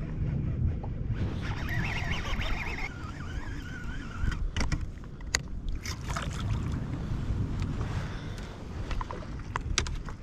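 Steady low wind rumble on the microphone with water moving against a kayak hull, broken by a few sharp clicks about halfway through and again near the end.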